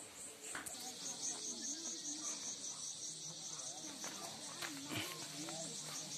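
A steady, high-pitched chorus of insects chirping with a fast pulsing beat. It sets in just under a second in, with faint distant voices talking under it.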